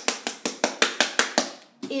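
A small bottle of FolkArt Royal Gold metallic acrylic paint shaken hard, the paint knocking inside about six times a second, stopping about a second and a half in.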